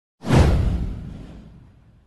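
A whoosh sound effect with a deep low rumble: it starts suddenly a moment in, sweeps down in pitch and fades away over about a second and a half.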